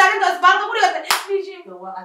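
A woman talking in a raised, high-pitched voice, with a single sharp hand clap about a second in.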